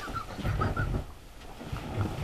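Faint, muffled mouth and throat sounds from a man drinking from a glass beer boot as he tries to hold in a laugh mid-gulp.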